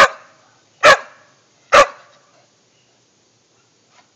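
Bull terrier barking three times, about a second apart: an upset dog protesting at being shut in its pen.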